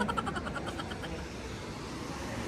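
Steady, even background hiss of road traffic, with no single sound standing out.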